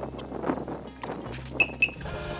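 Two short, loud beeps about a quarter of a second apart near the end, from a checkout barcode scanner registering a bag of expanded clay. Before them, packaging is handled at the counter over faint background music.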